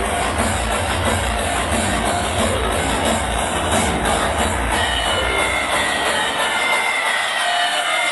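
Hardcore techno DJ set played loud through a club sound system, heard from the crowd, with a heavy pounding kick drum. About five seconds in the kick drops out, leaving held synth tones for a breakdown.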